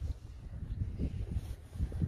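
Soft footsteps on tarmac, a couple of dull steps, over a low wind rumble on the microphone.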